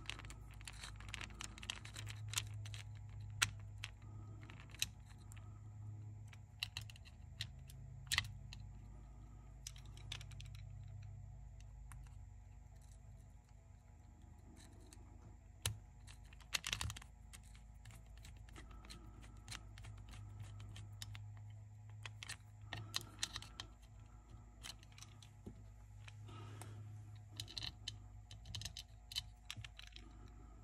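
Irregular small clicks and taps of fingers and a small tool handling the metal and plastic parts of a cassette deck's tape transport and motor circuit board, over a steady low hum.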